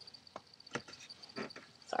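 Faint handling noise: four or five soft, short clicks and rustles of a paper origami waterbomb being handled.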